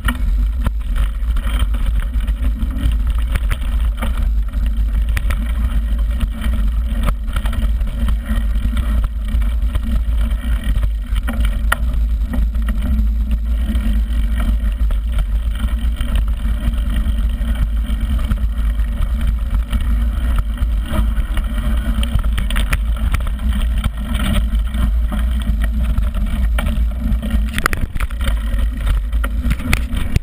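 Mountain bike riding fast down a gravel forest trail: a loud, steady wind rumble on the microphone, with tyre noise and frequent small knocks and rattles from the bike going over stones and roots.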